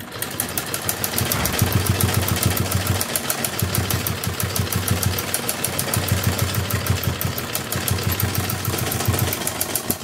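Domestic sewing machine running steadily at speed, stitching a seam through layered cotton fabric. It makes a fast, even clatter of needle strokes over a low hum.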